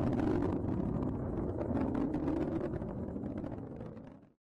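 Atlas V rocket with its RD-180 main engine and two solid rocket boosters firing during ascent: a steady low rumble that fades out near the end.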